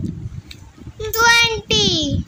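A child's high-pitched voice calling out the number 'twenty' in a drawn-out, sing-song way. The second syllable falls in pitch.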